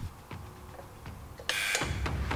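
Footsteps on a tiled floor, then about one and a half seconds in a short, loud mechanical rattle, followed by a low rumble.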